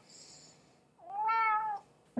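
Domestic cat meowing once, one drawn-out meow about a second in.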